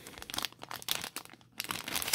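Thin clear plastic card sleeve crinkling in the hands, a run of small crackles.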